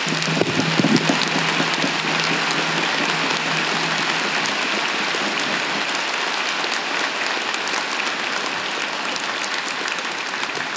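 Large audience applauding, loudest in about the first second and then steady.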